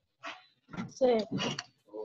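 A dog barking a few short times, heard over the video-call audio.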